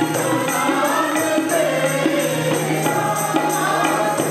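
Men and women singing a zaboor (a psalm sung in Punjabi/Urdu) together, over a harmonium's steady reedy drone and a regular high percussion beat of about four strokes a second.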